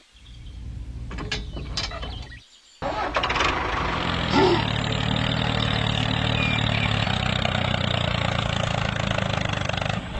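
A few sharp mechanical clicks and rattles in the first two seconds as the toy tractor's trailer hitch is coupled. After a brief pause, a tractor engine sound comes in suddenly and runs steadily with a low, even chug.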